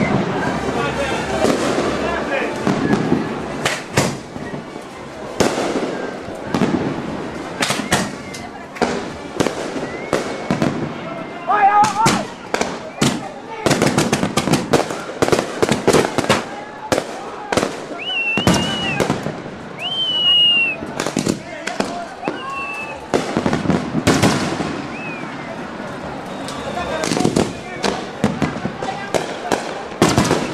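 Aerial fireworks going off in quick, irregular succession: many sharp bangs and crackles, with a few brief whistles about two-thirds of the way through. Voices of onlookers are heard beneath the explosions.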